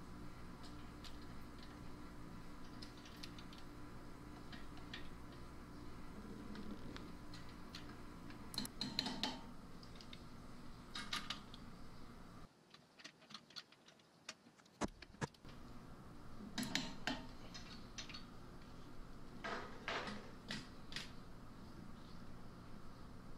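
Torque wrench ratcheting on the front brake caliper bolts as they are tightened to 70 foot-pounds: several short bursts of light metallic clicks and tool clinks over a faint steady hum.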